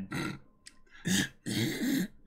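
A man's stifled laughter: about three short, breathy bursts.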